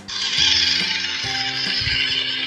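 A loud, steady hissing noise that starts suddenly, over light background music.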